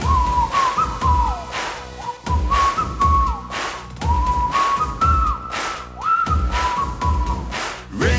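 Whistled melody in the anthem's instrumental break: a single high line with short downward slides at the phrase ends, over a steady pop drum beat.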